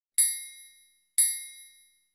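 Countdown sound effect: two bright, bell-like dings, one per second, each struck sharply and ringing out to silence within about half a second.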